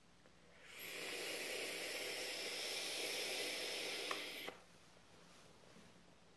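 A long draw of about four seconds on a sub-ohm vape fitted with an Eleaf EC coil and run at about 40 watts: a steady airy hiss of air pulled through the wide-open airflow over the sizzling coil, which starts and then stops cleanly.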